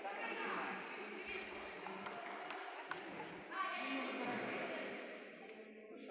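Voices talking in a large hall, with a few sharp clicks of a table tennis ball scattered through the middle.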